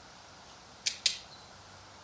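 Two quick, sharp metallic clicks about a fifth of a second apart from a pair of Vise-Grip locking pliers worked in the hand.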